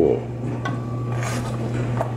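Steady low hum of a clothes dryer running, with a single knock and a few faint clinks of kitchen utensils and dishes.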